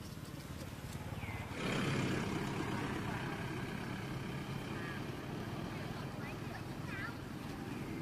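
Outdoor background noise that swells suddenly about one and a half seconds in and then slowly fades, with a few short high chirps scattered over it.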